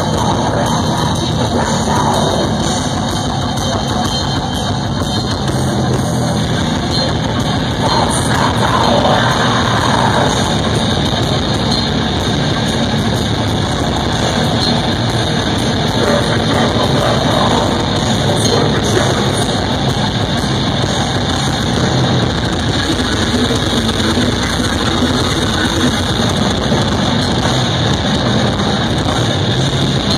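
Live technical death metal band playing loud: distorted electric guitars, bass guitar and a pounding drum kit, with the singer's vocals over them.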